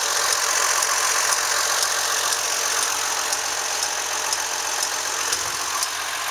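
2002 Chevrolet Trailblazer's 4.2-litre inline-six (Vortec 4200) idling steadily.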